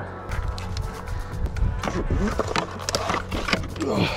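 Plastic clicks and knocks as the battery pack is worked loose and lifted out of an electric dirt bike's frame, many in quick succession in the second half, over steady background music.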